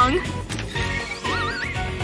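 A horse whinny sound effect: a short, wavering cry that rises in pitch about a second in, over background music.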